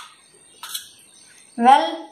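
Quiet room with one brief soft rustle of the phone and its packaging being handled, about two-thirds of a second in, then a boy's voice saying "well" near the end.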